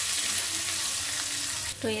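Sliced onions frying in hot oil in a metal kadhai, a steady sizzle that cuts off suddenly near the end.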